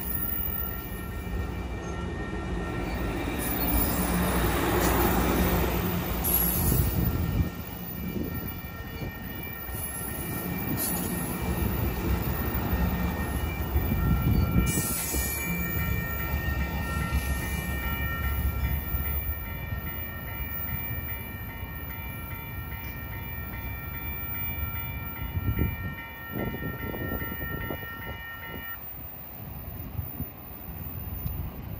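Amtrak Pacific Surfliner bilevel passenger cars rolling past a station platform, their heavy rumble loudest in the first seven seconds and easing as the train pulls away. A steady high ringing tone sounds over it and cuts off near the end, with the constant roar of ocean surf behind.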